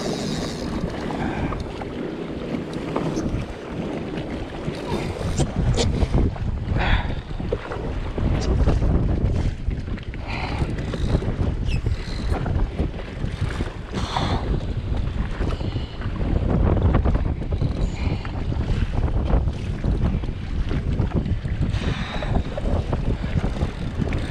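Gusty wind buffeting the microphone, swelling twice, about a third and two-thirds of the way in, over choppy water slapping against the hull of a Sea-Doo Fish Pro jet ski.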